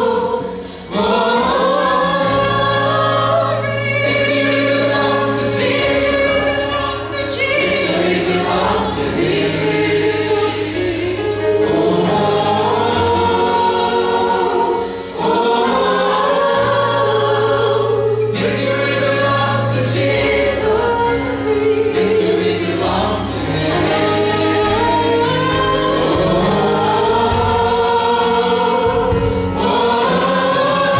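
Worship team of women singing a gospel praise song in harmony, sung phrases with breaks between them, over sustained keyboard chords and bass notes.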